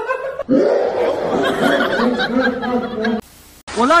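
A person laughing in a long run of quick, short chuckles that cuts off abruptly a little after three seconds in.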